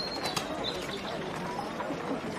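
Outdoor town ambience: birds chirping and cooing over a steady murmur of distant voices.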